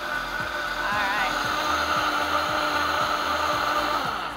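Vitamix blender running steadily, its motor whirring as it froths a matcha, almond milk and oil mixture, with a steady whine held throughout.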